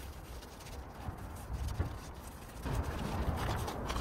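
Faint, soft scuffing of a tyre-dressing applicator pad and a microfibre cloth rubbing over a tyre sidewall and alloy wheel, with small irregular ticks, a little louder in the last second and a half.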